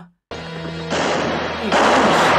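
Western film soundtrack gunfight: gunshots ringing out over background music, the first about a second in and a louder one near the end, each with a long echoing tail. It starts after a brief moment of silence.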